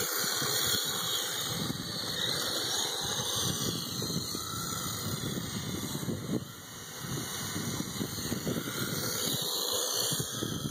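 Radio-controlled drift car driving and sliding on asphalt, under a steady rushing noise with uneven low rumble from wind buffeting the microphone. The sound drops briefly about six and a half seconds in, while the car is far away.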